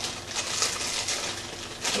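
Rustling and crinkling of small toy packaging being opened by hand.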